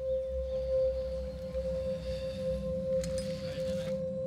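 Background music: a single steady ringing tone like a singing bowl, held throughout over a low rumble.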